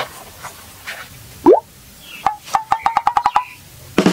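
Cartoon-style comedy sound effects: a short rising whoop about a second and a half in, then a quick run of about a dozen clicks that speed up over a steady tone.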